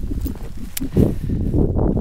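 Footsteps trudging through fresh snow, an irregular low crunching and thudding, with a low rumble from wind and handling on the microphone.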